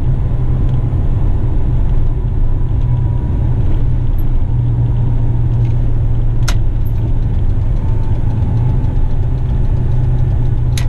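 Western Star truck's diesel engine running steadily under way, a low drone heard inside the cab. A single sharp click comes about six and a half seconds in.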